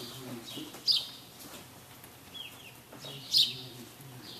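Small birds chirping, with two sharp, loud chirps about a second in and near the end and softer chirps between.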